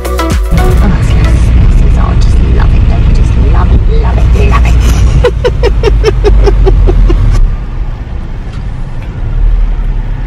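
A car's cabin while it drives slowly, a loud steady low rumble of engine and road. About halfway through comes a quick run of ticks, about four a second for two seconds.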